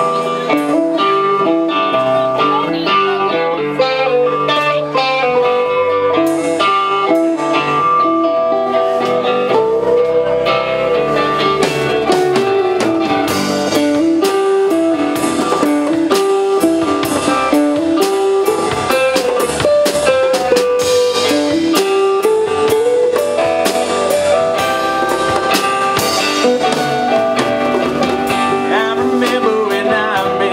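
A live band playing a blues-tinged country-rock song on electric guitars, bass guitar and drum kit, with a guitar carrying the melody.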